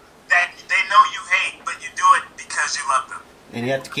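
People talking over a video call, heard through the computer's speaker. A deeper man's voice comes in near the end.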